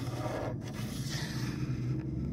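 A plastic card scraping softly as it is slid along an autoharp's strings and soundboard, over a low steady hum.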